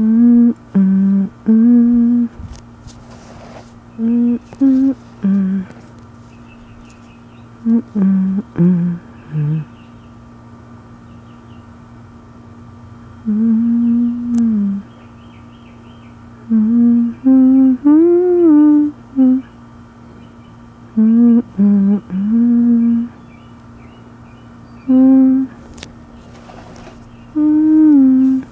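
A person humming a slow, wordless tune in short phrases, with pauses between them, over a faint steady background hum.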